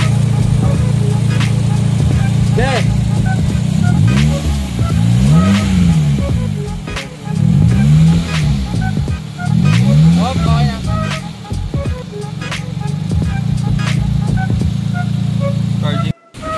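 Mitsubishi Xpander car engine idling steadily, revved up and let fall back about four times in the middle, as during a charging-system check with a battery tester.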